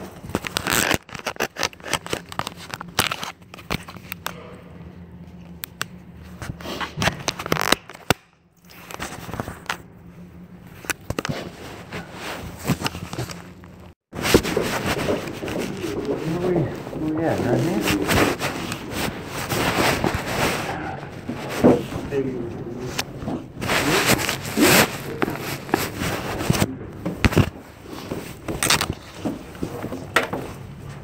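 Rustling, scraping and crackling of clothing rubbing against a hidden recorder's microphone. Muffled, indistinct voices come in about halfway through.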